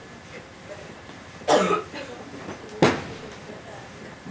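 A person coughs twice: a longer cough about a second and a half in, then a shorter, sharper one near three seconds.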